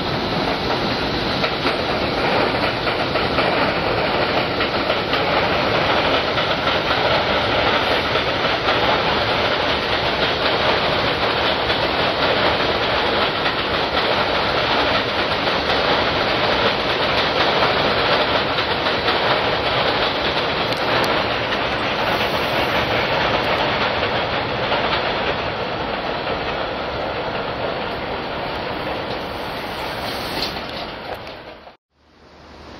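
New York City Subway 7 train of R62A cars running past on its elevated embankment, a steady rumble of steel wheels on rail with clickety-clack, easing off near the end as it moves away.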